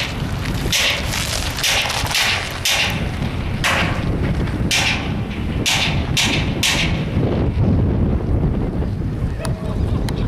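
Strong wind buffeting the microphone: a steady low rumble, with short hissing gusts about once a second during the first seven seconds.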